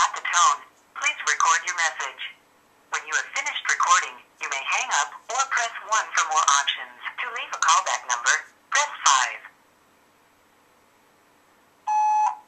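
A recorded voicemail greeting played through a mobile phone's speaker, saying the person is away, followed near the end by the voicemail beep.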